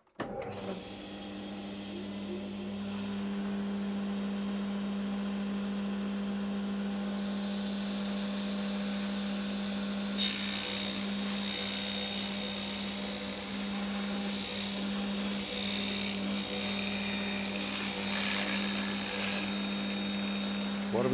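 Table saw fitted with a Messer industrial fine-finish blade switching on, spinning up over the first couple of seconds and then running with a steady hum. About ten seconds in, a higher-pitched cutting noise joins it as the blade rips through the board.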